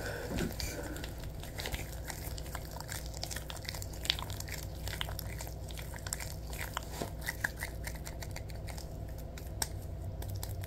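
Latex gloves slick with lotion being rubbed and squeezed together, making many small irregular sticky clicks and squelches.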